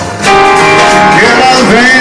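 A small live band of piano, double bass, drum kit and saxophone playing, with a brief dip in loudness at the very start before the full band comes back in.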